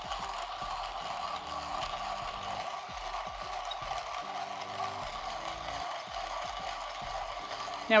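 Comandante C40 Mk3 Nitro Blade hand grinder crushing lightly roasted coffee beans between its stainless steel burrs as the crank is turned, a steady, even grinding without pauses. It turns smoothly and takes no effort, with no slipping.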